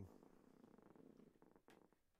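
Near silence, with a faint low, finely pulsing rasp that dies away near the end.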